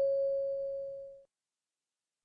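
A single chime from the listening-test recording, struck just before and ringing out, fading away about a second in. It marks the end of the dialogue before the question is read again.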